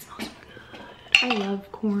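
A glass salsa jar being handled: a few sharp clinks near the start.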